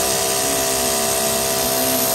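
Feed-off-the-arm chainstitch sewing machine running at high speed, stitching heavy denim: a steady, even whirring whine with a hiss of needles and feed.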